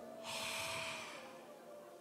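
A single loud breath into a close microphone, a rush of air lasting about a second, over a faint held tone.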